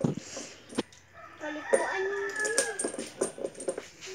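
Water splashing from a plastic dipper poured over a dog's coat, with a few clicks, then a dog whining in a long, wavering, pitched call lasting about two and a half seconds.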